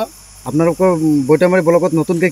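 A woman speaking, starting about half a second in, over a steady high-pitched drone of crickets.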